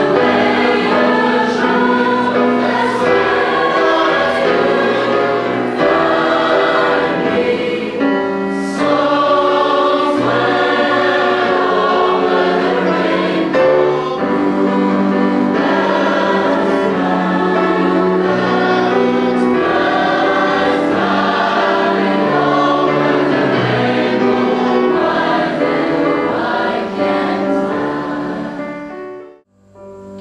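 Large mixed choir of teenage voices singing together.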